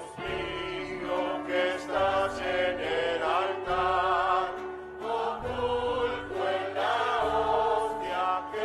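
Background choral music: voices singing a slow, sustained piece over held low notes that change every second or two.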